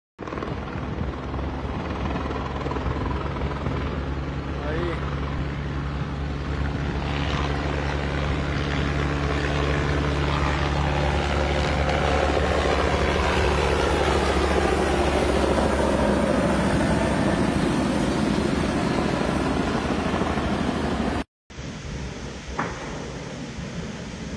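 Helicopter flying low nearby, its rotor running steadily and growing louder through the middle. It cuts off abruptly about 21 seconds in, leaving quieter outdoor noise.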